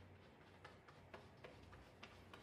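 Faint wet clicks, a few a second, of hands working shampoo lather into a small dog's soaked coat, over a low steady hum.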